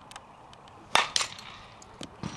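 A softball bat hitting a tossed fastpitch softball about a second in, a sharp crack, followed a fraction of a second later by a second, slightly weaker smack.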